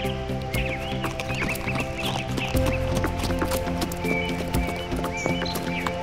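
Background music with the clip-clop of a horse's hooves as a cartoon sound effect, with a few faint chirps.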